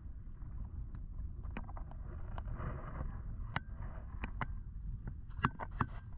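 Wind rumbling on the microphone, with irregular sharp clicks and light clinks that come more often in the last couple of seconds.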